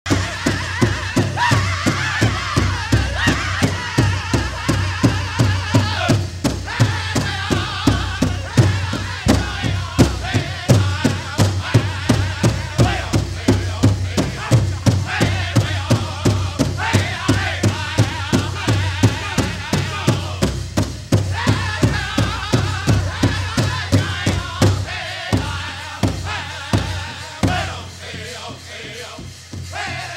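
Pow wow drum group singing an intertribal song: several singers strike one large drum in a steady beat, about three beats a second, under loud group singing. The song winds down and stops near the end.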